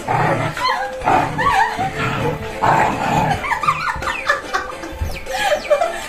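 Several small dogs yipping and whining excitedly in repeated short outbursts with rising-and-falling squeals, over a pop-rock song with accordion playing.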